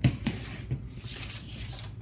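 Tools being handled on a cutting mat: a sharp click at the start, then a couple of light knocks and rubbing as the rotary cutter is put down and the acrylic ruler slides off the paper.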